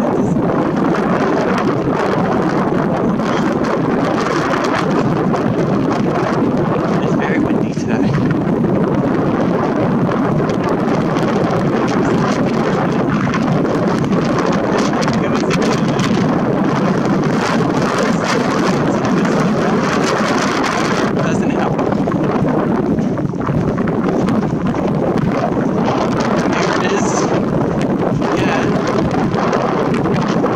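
Wind buffeting the camera microphone: a loud, steady rushing noise throughout.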